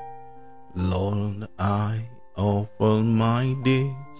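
Slow worship song: a man's voice sings three drawn-out phrases over steady held chords.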